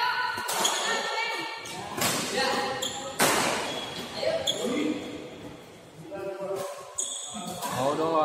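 A badminton rally: the shuttlecock is struck by rackets about five times, sharp hits roughly a second apart that ring on in the hall. Players' voices call out between the shots.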